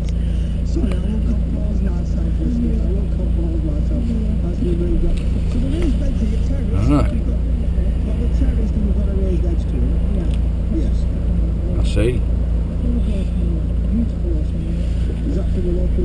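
Steady low drone of a car's engine and road noise heard from inside the moving cabin, with faint voices over it.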